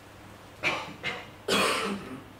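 A man coughing: a short burst of coughs, the last one the loudest, near the end.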